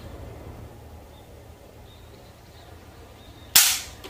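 A spring-powered air-cocking toy pistol fires once, about three and a half seconds in: a single sharp pop as the spring piston slams forward and launches a tsuzumi (drum-shaped) pellet.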